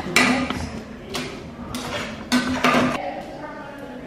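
A spatula scraping and knocking inside a stainless steel pot of tomato sauce as the sauce is stirred: four short scrapes in a few seconds.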